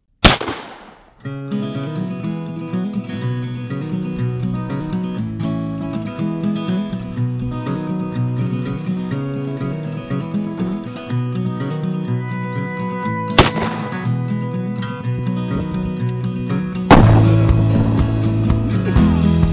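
Black-powder percussion muzzle-loading shotgun shots: a loud report at the very start that rings out for about a second, another about two-thirds of the way through, and a loud one near the end. Background music with a steady beat plays between and under the shots.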